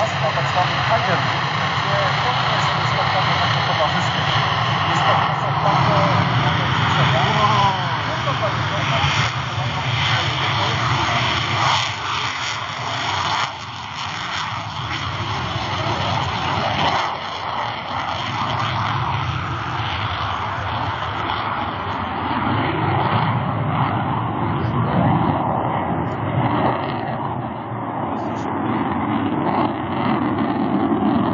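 A Mikoyan MiG-29 fighter's twin turbofan engines giving steady jet noise as it flies its display, with people talking underneath.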